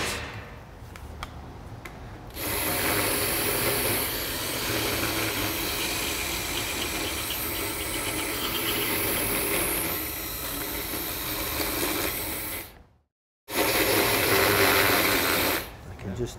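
Powered acetabular reamer, a 48 size, running as it reams the socket of a model pelvis, a steady drill-like whir with grinding. It starts about two seconds in, cuts out abruptly for about half a second near the end, then runs again briefly.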